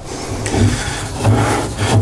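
Rubbing, scraping noise of a heavy metal filter bowl being turned by hand onto the fine thread of a hydraulic filter head.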